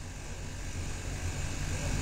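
A steady low hum with a faint hiss: the background noise of the recording between spoken words.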